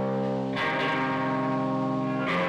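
Live instrumental rock: sustained electric guitar chords held through a guitar amp, with a new chord struck about half a second in and left to ring.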